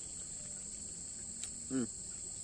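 Steady, high-pitched chorus of insects running throughout, with a brief mouth click and a short contented "hmm" from the man near the end.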